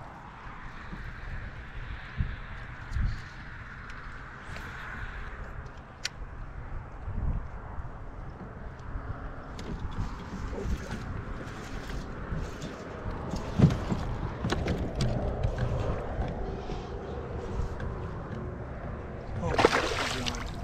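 Outdoor sound on a fishing kayak: wind rumbling on the microphone and water sloshing against the hull. Scattered light clicks and a few knocks come from rod and reel handling, with a louder knock a little past the middle.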